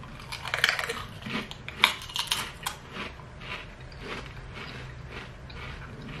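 Two people biting into and chewing Pringles potato crisps: a run of irregular crisp crunches, loudest in the first three seconds, then quieter chewing.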